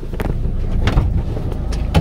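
Low steady rumble inside a parked car, with a few short sharp clicks and knocks from the passenger door being unlatched and swung open.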